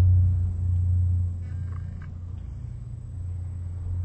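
A low rumble, loudest for about the first second and then easing to a quieter steady hum, with a few faint clicks around one and a half to two seconds in.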